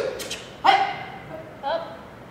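Short, sharp shouted calls about a second apart, the kind of yells given with each taekwondo punch, preceded by a few crisp snaps as the techniques are thrown.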